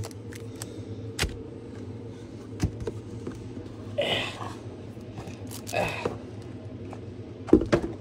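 Foil Pokémon booster packs being handled and set down on a play mat: a few sharp taps and short crinkles, about 4 s and 6 s in, over a steady low hum.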